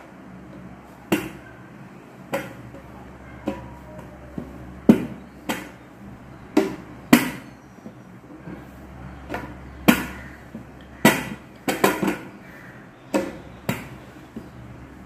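Wooden rolling pin rolling chapati dough on a stainless steel plate, knocking against the plate in sharp clacks about once a second, sometimes two or three in quick succession.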